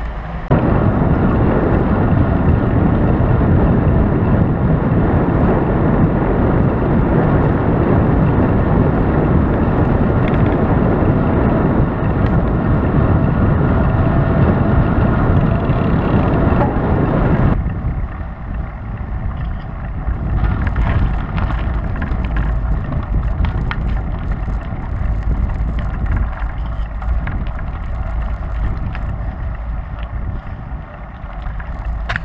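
Wind rushing over the microphone of a moving, bike-mounted action camera, with road noise under it: a loud, steady rush that drops to a softer rush a little past halfway.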